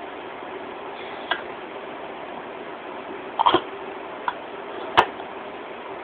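A few small clicks and knocks from a metal food can being worked open by hand, with a short cluster of them about three and a half seconds in and one sharp click about five seconds in, over a faint steady hiss.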